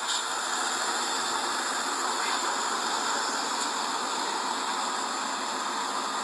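Steady, even rushing noise with no breaks: the outdoor background of a phone recording made beside a stopped SUV at night.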